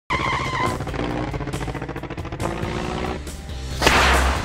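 Animated intro's theme music mixed with car sound effects, with a sudden swish just before the end.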